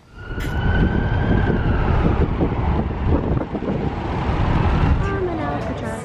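A wailing tone that slowly falls in pitch over the first couple of seconds, over loud, dense rumbling noise with many small knocks; a voice comes in near the end.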